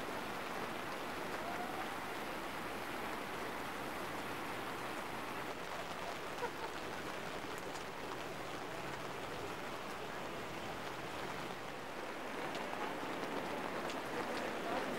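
Steady hiss of rain falling on wet ground and water, mixed with the rush of a river in flood.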